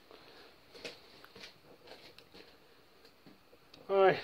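Quiet room tone with a few faint, scattered light taps and rustles of handling.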